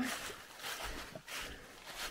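Footsteps through a carpet of dry fallen leaves, a rustling crunch repeating a bit under twice a second.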